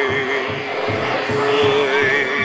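Experimental live sound performance: a held, wavering tone with vibrato over a steady low pulse of about four beats a second.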